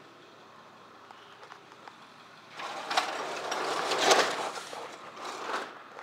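Cardboard box rubbing and knocking against the camera as it is carried: a scraping rustle with a few light knocks that starts about halfway through and is loudest near the end.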